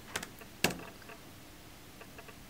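A few sharp clicks from computer keyboard keys being pressed, the loudest about two-thirds of a second in.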